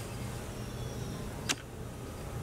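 A single light click about one and a half seconds in, as the wire heart's metal legs knock against its ceramic dish, over a low steady hum.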